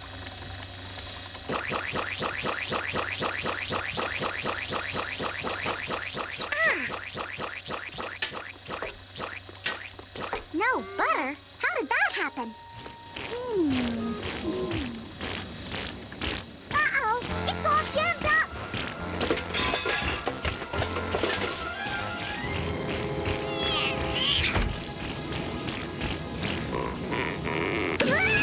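Cartoon soundtrack: score music with comic sound effects and wordless character vocal noises. A fast, even rhythm runs through the first half, with sliding vocal sounds around the middle.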